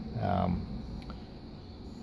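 A man's brief drawn-out hesitation sound, about half a second long, at the start, then quiet room tone with a faint low hum.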